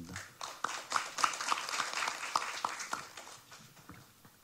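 Scattered applause from a small audience, fading out over the last second or so.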